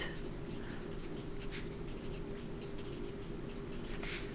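Sharpie felt-tip marker writing on paper: faint, short scratchy strokes coming one after another.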